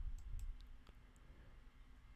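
A few faint clicks of a computer mouse button in the first second, over low hiss.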